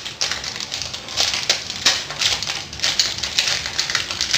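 Toy packaging being handled and unpacked from a cardboard gift box: irregular crinkling, crackling and small clicks, a few of them sharper taps.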